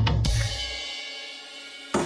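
Drums and bass in a break in the beat: a cymbal crash rings out and fades over a dying low bass note. A sharp drum hit near the end brings the beat back in.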